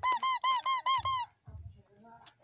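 Rubber squeaky toy rat squeezed by hand, giving a quick run of about seven short squeaks, each rising and falling in pitch, then stopping after a little over a second.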